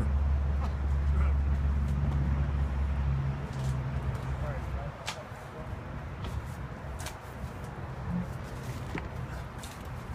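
An engine running with a steady low hum that drops away about five seconds in, then a few light knocks and scrapes of a steel shovel digging in wet soil.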